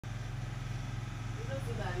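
A steady low hum, with a faint voice coming in over it near the end.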